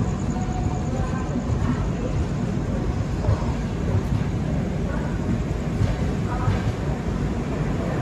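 Passenger train rolling along a station platform: a steady rumble of wheels on the track.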